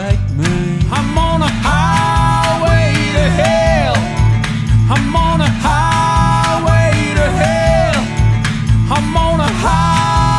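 Country-style acoustic duo playing: strummed acoustic guitars over a steady kick-drum beat, with sung vocals on long held notes.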